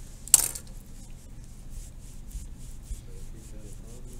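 A sharp scrape about a third of a second in, then a run of faint, quick rubbing strokes, about four a second.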